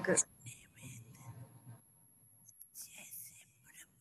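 A spoken word ends at the start, then a faint, breathy, whisper-like voice comes and goes softly in two short stretches.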